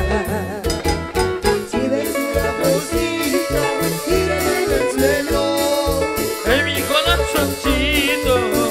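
Live Latin tropical dance-band music with a steady bass-and-drum beat under melody lines.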